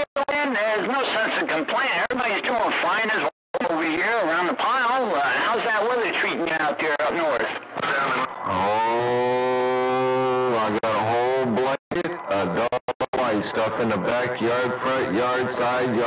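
A man's voice coming in over a CB radio, distorted enough that the words can't be made out. A steady pitched sound is held for about two seconds in the middle, and the signal drops out briefly a few times.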